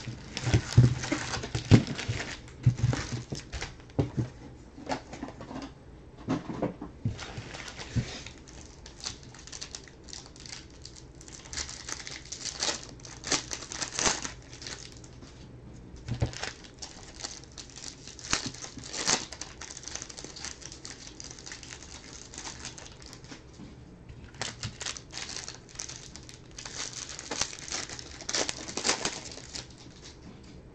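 Foil packs of 2018 Bowman Jumbo baseball cards crinkling and rustling as they are pulled from their cardboard box and handled, with irregular clicks and taps throughout and louder spells of crinkling toward the middle and the end.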